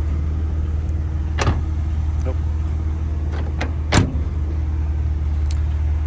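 A BMW Z4 3.0i's inline-six idling steadily under a soft knock about a second and a half in and a louder thud about four seconds in as the car door is shut.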